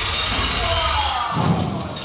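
Time-machine travel sound effect played over the hall's PA, a dense noisy sound with sliding tones, with a thud about a second and a half in.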